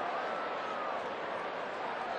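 Faint, indistinct voices over a steady background hiss, with no clear words.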